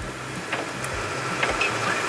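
Steady engine drone and road noise heard from inside the cab of a converted school bus driving slowly on a snow-covered freeway.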